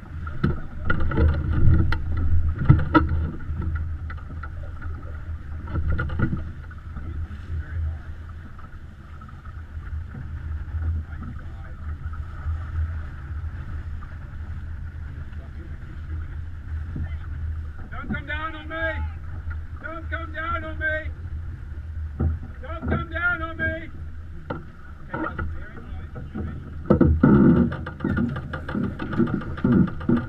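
Steady rush of water and wind around a sailing yacht under way, with a few knocks in the first seconds. Midway there are three short, wavering calls, each about a second long, then a louder rush of noise near the end.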